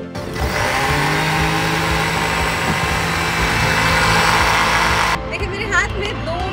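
Countertop electric blender running steadily as it churns a sattu drink with milk, then cutting off abruptly about five seconds in.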